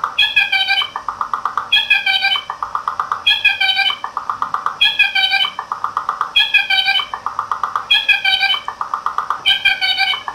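Circuit-bent bird-song calendar sound strip, its recorded bird call retriggered over and over by a 555 oscillator: the same short clip repeats about every one and a half seconds, a rapid buzzy trill alternating with a stack of chirping notes. The oscillator's ramp wave, fed into the pitch circuit through a body contact, sweeps the pitch subtly as the clip repeats.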